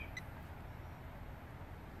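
Faint outdoor background: a low, steady rumble under an even hiss, with two brief faint high chirps right at the start.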